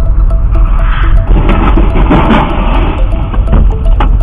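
Electronic background music with a steady ticking beat, laid over loud rumbling road noise from a dash cam. The rumble swells into a rougher surge of noise for about a second in the middle.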